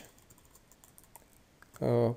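Faint, scattered keystrokes on a computer keyboard: a few light taps over about a second and a half as a line of code is typed.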